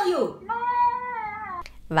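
A single drawn-out high cry, held at a steady pitch for about a second and dropping slightly as it ends.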